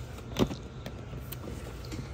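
Clear plastic drawer of a Sterilite cart being handled, sliding on its runners, with one sharp plastic knock about half a second in and a few lighter clicks after it.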